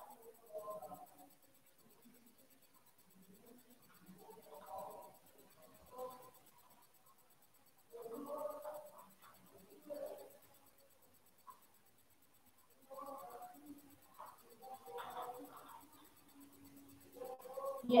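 Paper pages of a workbook being handled and turned over, soft and intermittent, with faint voices at intervals.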